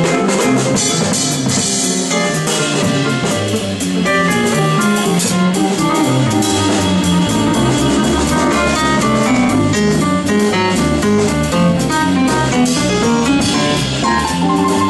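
A live jazz-funk band playing: drum kit, electric bass, guitar and keyboard. The deep bass line comes in more strongly about halfway through.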